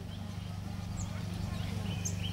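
A pause in the preaching filled by a steady low electrical hum from the microphone and sound system, with a few faint, brief, high chirps.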